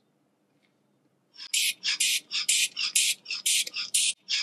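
Blood pressure cuff being pumped up with the rubber hand bulb of an ADC aneroid sphygmomanometer: rapid squeezes starting about a second in, about three a second, each a short airy rush through the bulb's valve as the cuff pressure climbs.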